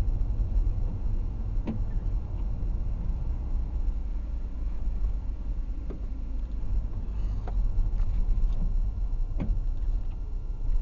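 Low, steady rumble of a car driving slowly, heard from inside the cabin, with a few faint clicks and knocks scattered through it.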